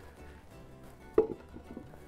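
Quiet background music with a plucked guitar, under a pause in speech. A single short, louder sound comes about a second in.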